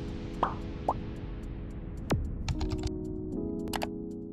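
Intro-animation sound effects over a music bed of sustained chords: two quick rising pops about half a second apart, a falling swoop about two seconds in, then a run of keyboard-typing clicks ending in a mouse click near the end.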